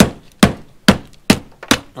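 Hammer blows, about two a second, five in all, knocking loose old tar off a copper gutter flashing on a flat roof.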